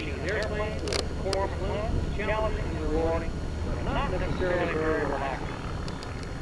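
Unclear voices talking throughout, over a steady low drone from the distant engine of a Van's RV-4 light aircraft flying aerobatics.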